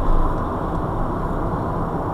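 Steady road and engine noise heard inside a car cabin moving at about 30 mph: an even low drone of tyres on tarmac and the engine.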